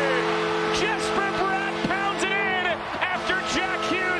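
A long, steady multi-note chord from the arena after a home goal, holding unchanged, with a man's voice over it.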